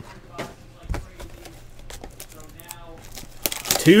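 Cardboard trading-card box and its contents being handled: light rustling and crinkling with a few sharp taps, the loudest about a second in.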